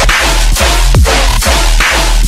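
Loud dubstep-style electronic remix: heavy sub-bass under a dense, hissy synth layer, with deep kick drums that drop sharply in pitch.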